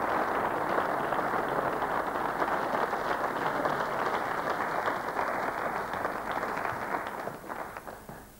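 Studio audience applauding steadily, the clapping dying away near the end.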